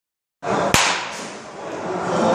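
A single sharp crack of a bat hitting a pitched baseball, with a brief echo, over steady room noise in an indoor batting cage.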